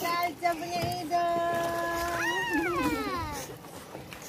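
A child's voice calling out a long, held note that jumps up in pitch about two seconds in, then slides down and fades, after a few short notes.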